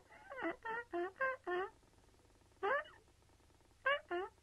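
A run of about eight short, high squeaks, each bending in pitch, coming quickly over the first second and a half, then one near the three-second mark and one at the end, as the clay figure is rubbed clean with a gloved hand.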